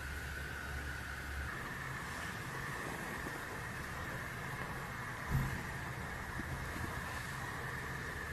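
Steady background hum and hiss with a faint, constant high whine; the low hum changes abruptly about a second and a half in. A single soft thump comes a little past five seconds.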